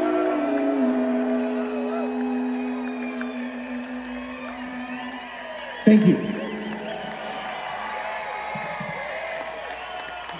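A live band's last chord is held and fades out over the first six seconds, while the festival crowd cheers with scattered whoops and whistles that grow after the singer's thanks.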